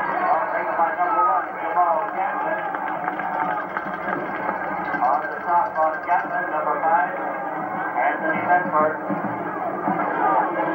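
Indistinct voices of people talking over steady background noise.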